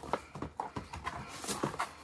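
Gift items and their packaging being handled while rummaging through a box: a run of light, irregular knocks and clicks with some rustling.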